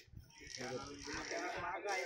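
A man's voice speaking, after a brief pause at the start.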